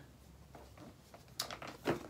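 Cardboard camera box being handled and pulled open: after a quiet stretch, two short scraping rustles, about one and a half seconds in and again just before the end.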